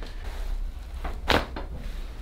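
A single sharp crack of a neck joint popping under a chiropractic cervical adjustment, a little past halfway through.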